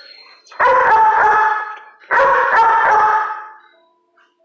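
A dog giving two long, loud calls, each just over a second, the second starting about half a second after the first ends.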